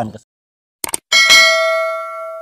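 Subscribe-button animation sound effect: two quick mouse clicks, then a bright notification bell chime rings out and slowly fades.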